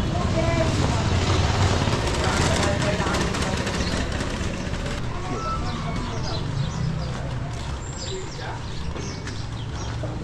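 Narrow-street ambience: a steady low engine or machine rumble that slowly fades, with people talking in the background.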